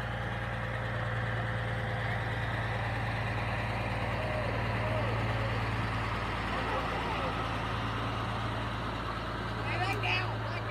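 A semi truck's diesel engine running at a crawl as the rig passes close by, a steady low hum. Voices call out over it, with a short louder shout near the end.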